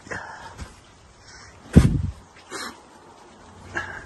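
A dog giving a few short barks, the loudest about two seconds in.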